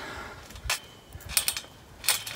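A trampoline bouncing under a person going into a front handspring: one thump about two-thirds of a second in, then a quick run of knocks and rattles around a second and a half in.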